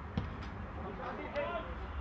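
A football kicked once, a dull thud just after the start, followed by distant shouts and calls from players on the pitch over a steady low hum.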